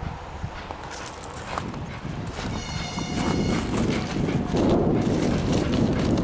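Diesel locomotive of Czech class 464.2 "Rosnička" pulling away under load with a passenger train, its engine rumble building and growing louder from about three seconds in. A short high tone sounds for about a second just before the rumble swells.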